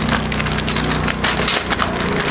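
Plastic packaging and cloth crinkling and rustling in quick irregular crackles as packed ladies' suits are handled and laid out.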